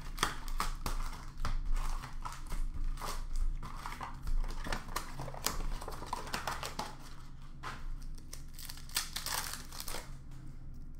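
Hockey card pack wrappers crinkling and tearing as they are opened by hand, with the cards being handled. A continuous run of short crackly rustles, loudest about nine seconds in.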